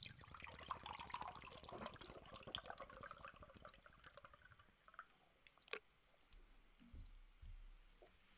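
Faint liquid pouring or trickling, a dense patter lasting about four seconds, followed by a single sharp click a little later.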